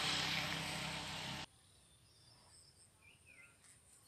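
Steady hiss of outdoor background noise that cuts off abruptly about a second and a half in. Near silence follows, with a few faint bird chirps.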